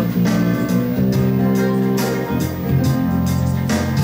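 Live jazz band playing an instrumental passage, with sustained chords over a light steady beat.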